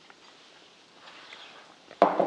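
Quiet room tone with a few faint, soft handling noises from a glass bowl of shredded salad being moved about a second in.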